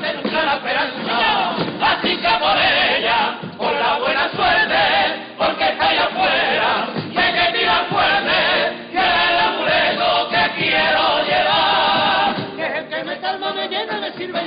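A carnival comparsa choir singing together in harmony, in phrases with short breaks between them.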